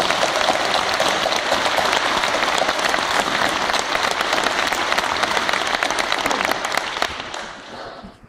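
Audience applause: many hands clapping together in a dense, steady patter that dies away near the end.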